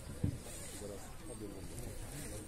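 Faint conversation among passengers, with one short sharp knock about a quarter of a second in.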